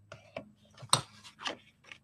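Designer-paper card stock being handled and folded along its score lines by hand on a desk: about five short paper rustles and crackles, the sharpest about a second in.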